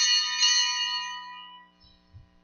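A small, high-pitched bell struck twice in quick succession, its clear tones ringing on and fading away over about a second and a half. It is typical of a sacristy bell rung to signal the start of Mass.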